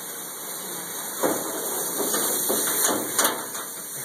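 Water running from a hand-held shower sprayer in a stainless steel tub: a steady hiss that grows a little louder. From about a second in there are several sharp knocks or splashes.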